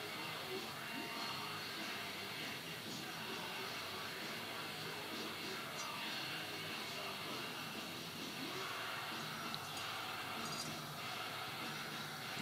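Faint, steady background hiss of a quiet room, with no distinct sounds in it.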